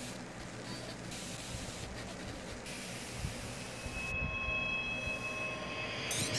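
A steady hiss of noise from the soundtrack of a playing online video. It thins out about four seconds in, when a faint, steady high tone comes in.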